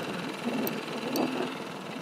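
Small boat outboard motor running steadily at trolling speed, a constant hum under the scene.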